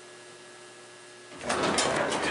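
Faint steady hum inside a 1972 Dover service elevator car as it slowly levels at the floor. About one and a half seconds in, a sudden loud rattling clatter starts, the car's doors opening.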